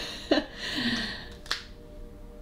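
A single sharp finger snap about one and a half seconds in, after a few soft vocal sounds from the person.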